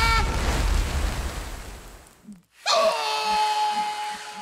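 Cartoon sound effects. A held tone breaks off into a rushing hiss with a low rumble that fades away over about two seconds. After a brief silence, a new steady high tone sets in with a faint pulsing beat underneath.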